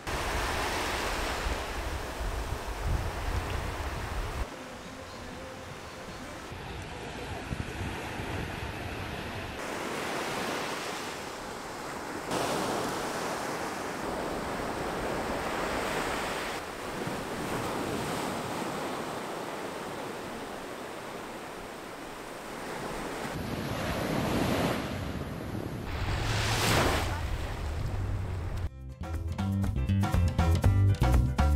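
Ocean surf breaking and washing up a sandy beach, swelling and fading every few seconds, with wind buffeting the microphone at times. Music comes in near the end.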